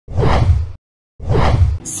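Two whoosh sound effects from a news channel's opening graphic, each under a second long, separated by a short gap of total silence.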